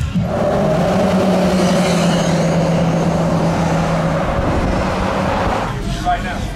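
A motor vehicle's engine running at a steady speed, a rushing noise with a constant low hum. The hum drops out about four seconds in, and the sound stops just before the end.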